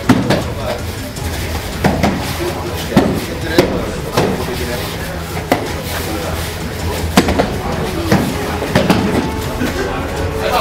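Several people talking at once in a reverberant training hall, broken by about a dozen sharp, irregular knocks and thuds.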